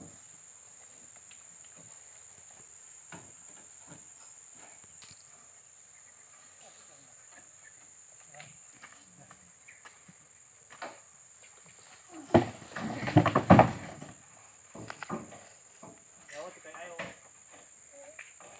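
Steady high insect chirring, from crickets, with scattered faint knocks. About two-thirds of the way in comes a loud two-second burst of knocking and clatter with voices, as a water buffalo is hauled onto the wooden bed of a pickup truck. Shorter bursts of clatter follow.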